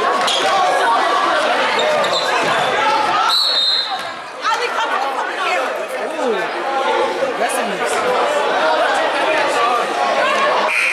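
Gym full of overlapping voices from players, benches and spectators, with a basketball bouncing on the hardwood. A short, high referee's whistle blast about three seconds in stops play.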